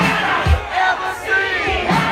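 Loud dance music from a live act with a deep, regular beat, the crowd shouting and singing along over it.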